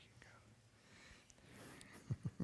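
Near silence, with faint whispering in the second half.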